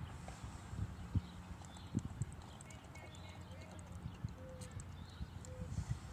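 Drinking water from a plastic bottle: soft, irregular low gulps and knocks spread over several seconds.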